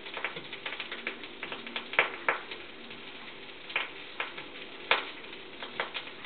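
Food frying in fat in a frying pan: a steady sizzle with irregular crackles and pops, a few of them louder.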